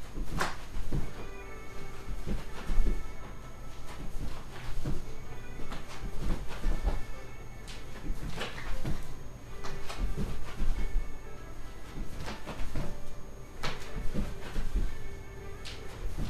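Feet stepping and shuffling on a floor in a two-step shuffle-and-touch exercise: irregular thuds and scuffs, with a few steady held tones sounding over them now and then.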